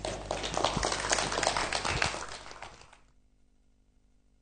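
Audience applauding, a dense patter of claps that fades out about three seconds in.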